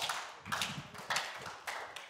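Faint footsteps on a stage, about four steps in an even walking rhythm, each a soft tap that fades quickly.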